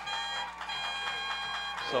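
A band's horns holding a steady chord, rich in overtones, with a short break about half a second in, as the band plays after a touchdown.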